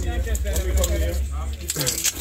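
Fish and ice shifting and clicking against each other in a cooler as a hand takes hold of a snapper, with a cluster of sharp clicks near the end, over a steady low rumble.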